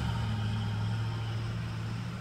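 A vehicle engine running with a steady low drone, heard from inside a car.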